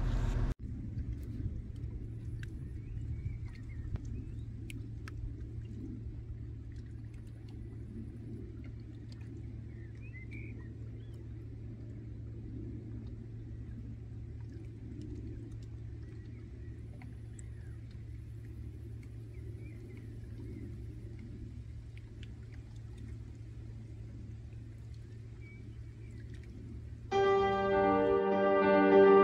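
Steady low outdoor rumble at a riverbank, with a few faint high chirps like distant birds; music comes in about a second before the end.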